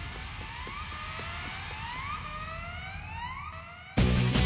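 Cartoon alarm or siren sound effect: a whooping tone that rises in pitch over and over, about twice a second, with the whoops overlapping and fading slightly near the end. Faint quick running footsteps sit underneath.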